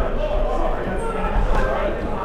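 Voices of players and onlookers calling out over one another, echoing in a large indoor sports hall, with a single thud about one and a half seconds in.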